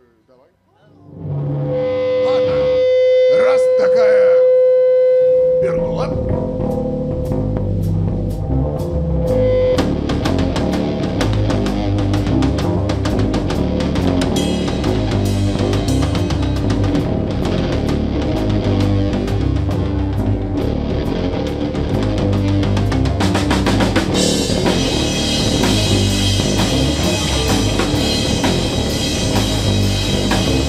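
Live rock band starting a song. About a second in, an electric guitar comes in with one long held note, then drums and the full band play steadily, with the cymbals getting busier near the end.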